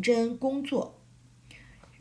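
A woman's voice speaking briefly, then a pause of about a second.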